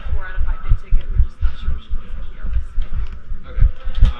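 Indistinct voices talking at a shop counter over a low, irregular thumping several times a second.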